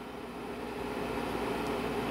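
Window air conditioner running with a steady hum and whir, growing gradually a little louder.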